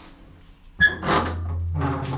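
Heavy steel hatch being unlatched and opened: a sharp metallic clank with a brief ring just under a second in, then steady noise as the door swings open.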